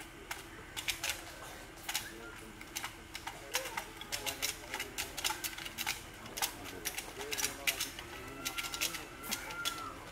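Irregular sharp clicks and taps throughout, over a low murmur of voices and a faint steady hum.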